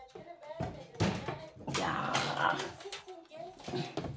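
A woman's voice talking in a small room, with a couple of short knocks as she moves about.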